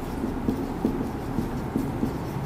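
Marker writing on a whiteboard: short knocks of the pen tip against the board, about two a second, over a steady low room hum.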